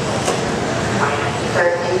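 Steady din of electric RC off-road cars running on an indoor clay track, with voices in the hall, a sharp tick about a quarter second in, and a man starting to talk near the end.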